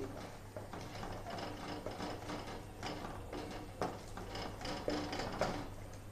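Wooden spatula stirring thick milk-and-butter masala gravy in a nonstick kadai, with irregular scrapes and taps against the pan.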